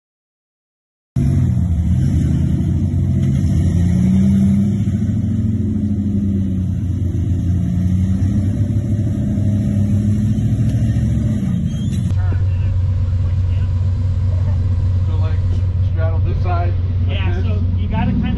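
A rock-crawling Jeep's engine revving up and down as it climbs slickrock, its pitch rising and falling in slow swells. About two-thirds of the way in, this gives way to a steadier engine drone with people talking over it.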